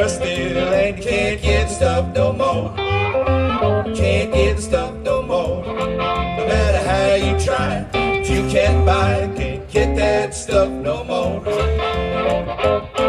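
Live blues trio playing an instrumental passage: a harmonica cupped to a microphone plays bending, held notes over an upright double bass keeping a steady pulse and an archtop electric guitar.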